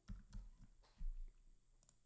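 Computer keyboard keys clicking faintly as a word is typed: a handful of irregular key taps in the first second, then a quick pair near the end.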